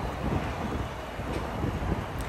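Wind buffeting the phone's microphone: a steady, rumbling rush, heaviest in the low end.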